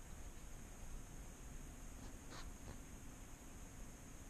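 Quiet room tone with faint handling rustle as the camera is repositioned, and one soft brief noise about two and a half seconds in.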